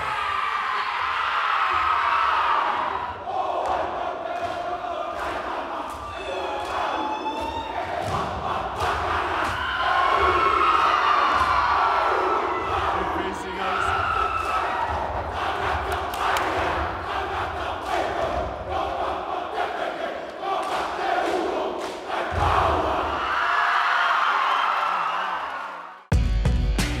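A large group of young men performing a haka-style war chant, shouting and calling in unison. Sharp slaps and stomps come again and again, with cheering mixed in.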